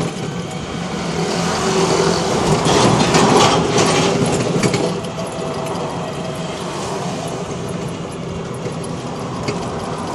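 Electric trike riding along a road: a steady motor hum with road and body rattle, growing louder with a burst of rattling and clicks between about two and five seconds in, then settling back to a steady run.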